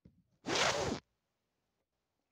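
A single short, forceful breath out through the mouth, a sigh or scoff lasting about half a second.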